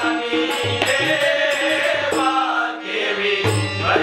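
Marathi devotional bhajan: a chorus of male voices singing, with harmonium, tabla and jhanj hand cymbals keeping an even beat.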